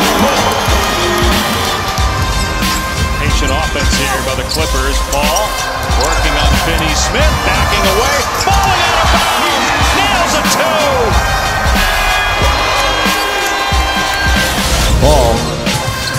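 Live basketball game sound: a ball dribbling on a hardwood court and short squeaks of sneakers, over steady arena crowd noise, with background music.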